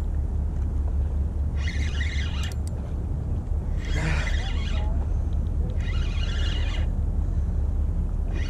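Spinning reel being cranked in short bursts, a whirring gear sound about a second long repeating roughly every two seconds, under a steady low rumble.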